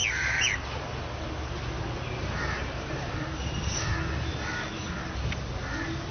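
Crows cawing faintly a few times over a steady low rumble.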